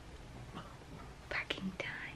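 Quiet room tone with a low hum, then a few short whispered syllables about a second and a half in.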